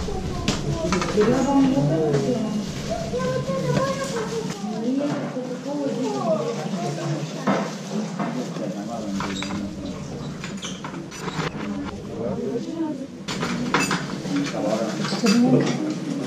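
Indistinct voices talking, with scattered clinks and knocks of a stainless steel bowl and metal kitchen utensils as a cook tips skewered ingredients into the bowl.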